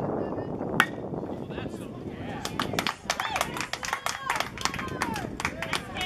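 A baseball bat hits a pitched ball with one sharp, ringing crack about a second in. Spectators then clap and shout.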